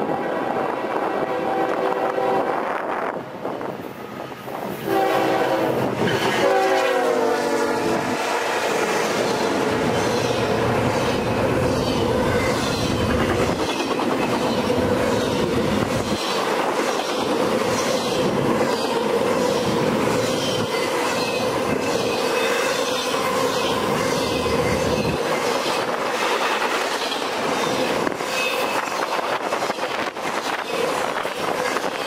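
Norfolk Southern freight locomotive's horn sounding twice: the first blast fades about three seconds in, and the second, from about five to eight seconds in, drops in pitch as the locomotive passes. After that an intermodal train of container well cars and trailers rolls by close at hand, a steady rolling noise with regular clicking of wheels over the rail joints.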